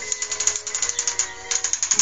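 Rapid, even clicking, about ten clicks a second, growing louder again near the end, over faint steady tones.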